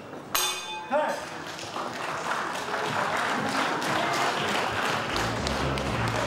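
A boxing ring bell struck about half a second in, ringing briefly, typical of the end of a round. Crowd cheering and applause then build, and music with a heavy beat starts near the end.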